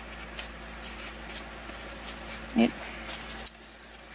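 Light rustling and scraping of thin cardboard pieces being handled and pushed together, a string of small soft clicks over a faint steady hum.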